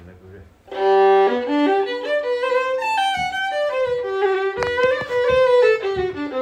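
Solo fiddle beginning a slow Irish tune about a second in, long held notes with slides between them, played deliberately without rhythmic pulse.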